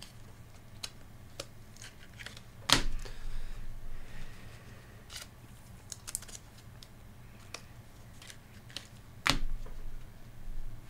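Scattered light clicks and taps from hands working at a desk, with two louder thumps, one about three seconds in and one near the end, over a steady low hum.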